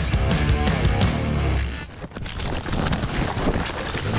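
Background music for about the first two seconds, then a rough, noisy rush of knocks and wind on a helmet camera as a hard enduro rider and his motorcycle tumble down a rocky slope in a crash.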